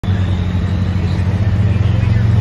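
Farm tractor engine running steadily with a loud, low drone.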